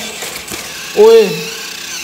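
RC toy tractor's small electric motor and plastic gearbox whirring steadily under load as it strains to haul its trailer over a foam speed bump; the trailer's weight is too much for it to pull.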